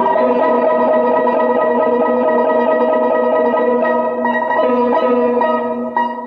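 Cantonese opera (yuequ) accompaniment playing an instrumental passage of long held notes, with a plucked string instrument prominent.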